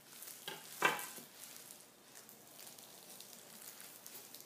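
Thin plastic gloves crinkling and a knife cutting wetly through a sardine, a crackly sound with a louder burst about a second in, then lighter crackling.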